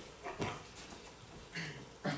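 Faint handling sounds at a wooden pulpit as a Bible is set down and opened: a soft knock about half a second in and a short rustle near the end.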